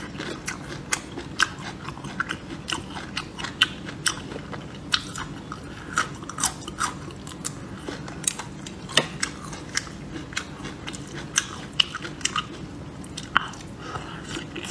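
A person chewing a red chili pepper, with many irregular crisp crunches and clicks several times a second.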